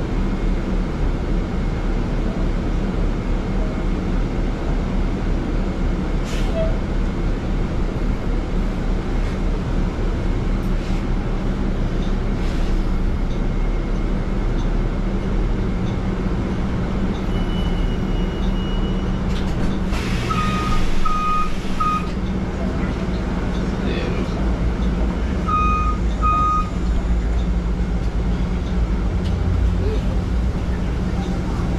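Cabin noise inside a Nova hybrid city bus, a steady low hum of the drivetrain under road noise. About two-thirds of the way through comes a short hiss of air with three quick beeps, and a few seconds later two more beeps, as the bus pulls up at a stop.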